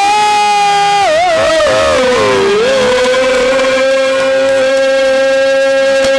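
A male Haryanvi ragni singer holds a long sustained note into the microphone. Between about one and two and a half seconds in, the pitch wavers and slides down. It then settles and is held steady over a harmonium's drone note.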